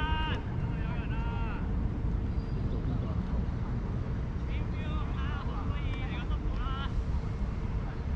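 Players shouting high-pitched calls across the field in two spells, about the first second and a half and again about halfway through, over a steady low rumble of wind and traffic.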